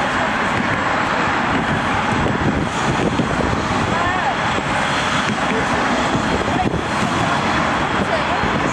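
Class 66 diesel-electric locomotive, its two-stroke V12 diesel engine running with a steady drone as it moves slowly along the track.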